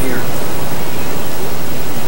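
Steady, loud hiss of the recording's background noise filling a pause in speech, with a faint low hum under it.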